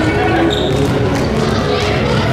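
Gymnasium din: basketballs bouncing on a hardwood court amid overlapping voices, ringing in a large hall.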